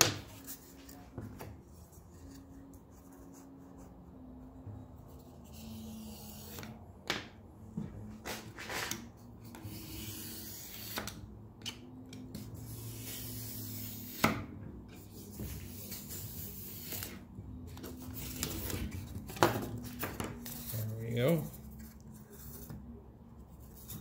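A knife cutting and scraping through blue polystyrene foam board, in scratchy strokes. Sharp knocks of tools being handled come between them, the loudest about 14 and 19 seconds in, all over a low steady hum.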